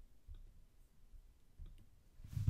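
Near silence with a few faint clicks from a computer's pointing device, one about a third of a second in and a couple more near the end.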